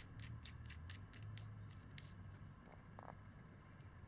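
Faint small clicks of a brass throttle elbow being twisted by hand in a carburetor top cap, about four a second at first, then sparser.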